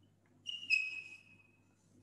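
A brief high whistle-like tone of two notes, the second slightly lower and louder, fading out within about a second.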